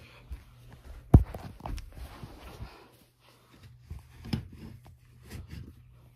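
A sharp knock about a second in, then scattered smaller bumps and rustles from the phone being handled and moved around, over a steady low hum.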